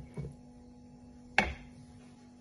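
Flour pouring softly from a ceramic mug, then the mug knocks once sharply on hard kitchen ware about two-thirds of the way through, with a brief ring, over a faint steady hum.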